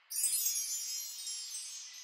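A shimmering magic-spell chime effect: many high, bright chime tones that start together and slowly fade over about two seconds. It marks a healing spell being cast.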